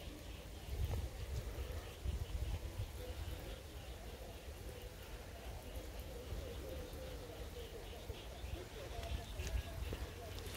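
Quiet outdoor background with a steady low rumble.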